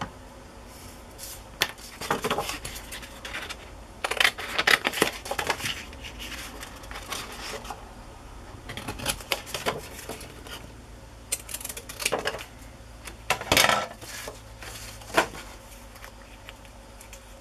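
Scissors cutting brown cardstock, with paper being handled: several short bursts of crisp snipping and rustling.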